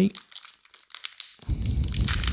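Foil Pokémon booster pack crinkling as it is handled and flexed in the fingers: a run of fine, scattered crackles, with a louder, fuller handling rustle close to the microphone near the end.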